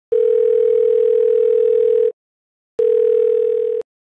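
Telephone ringback tone on an outgoing call: a steady hum-like tone rings for about two seconds, pauses briefly, then rings again for about a second and cuts off as the line is picked up.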